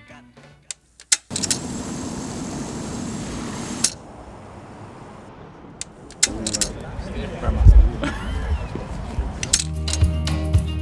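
Music stops, leaving a few clicks, then a steady hiss of ambient sound with indistinct voices of people chatting and a low thump; a guitar music track comes back in near the end.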